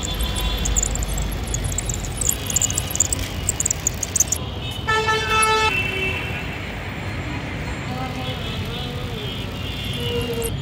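A horn gives one short toot, a bit under a second long, about five seconds in, over a steady low rumble.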